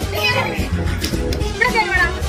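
A small child's voice calling out over background music.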